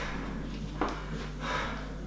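A man breathing hard while recovering from a set of leg exercises, with faint breaths about a second in and again a moment later, over a low steady hum.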